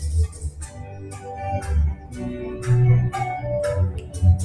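Bachata dance music playing, with a steady beat of short high percussion strokes over sustained keyboard-like notes and a bass line.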